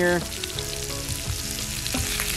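Sausage patties frying in hot grease in a cast-iron skillet, a fresh batch just put in, with a steady sizzle.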